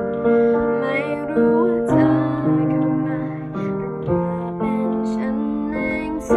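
Upright acoustic piano playing simple pop chords, with a new chord or bass note struck every half second to a second and left to ring. A girl's voice sings the melody softly over it.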